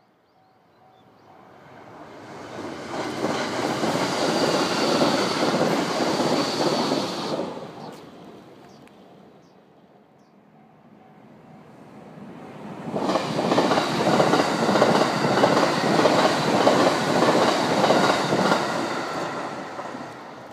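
Two 681/683-series limited express electric trains pass at speed, one after the other. Each swells to a loud rushing rumble with rapid wheel clatter, holds for about five seconds, then fades away.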